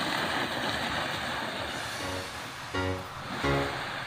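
Background music: a steady hiss-like noise fills the first half, then short pitched notes come in about halfway through and repeat in an even rhythm.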